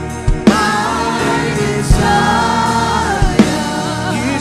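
Gospel worship singing: voices hold long, wavering notes over sustained accompaniment, with a few drum hits.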